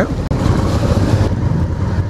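Honda Africa Twin motorcycle engine running at low speed, a steady low rumble, with wind noise on the helmet-camera microphone. The sound breaks off for an instant about a quarter second in.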